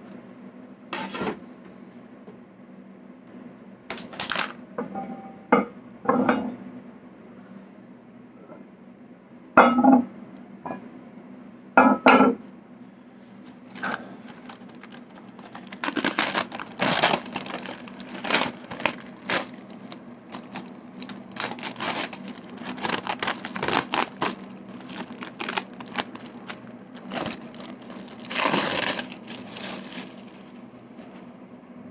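Plastic bag and plastic wrap crinkling, rustling and tearing as they are pulled and peeled off a freshly cured micarta slab, with a few louder knocks as the slab is handled. A faint steady hum runs underneath.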